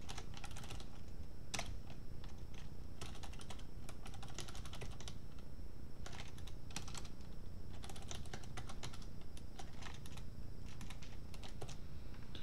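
Typing on a computer keyboard: runs of quick key clicks broken by short pauses.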